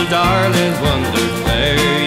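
Instrumental break of an Irish country song: a band plays the melody over a steady bass and drum beat, with no singing.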